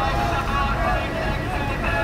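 Several people talking in low voices in a small lobby, the words indistinct, over a steady low rumble.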